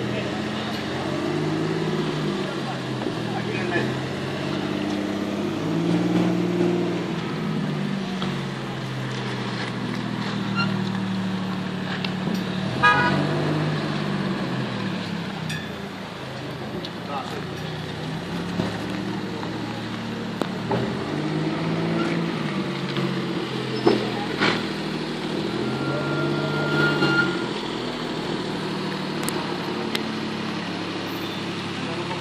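Alpine-Renault A310's engine running at low revs, the pitch rising and falling as the car manoeuvres slowly, with people talking nearby.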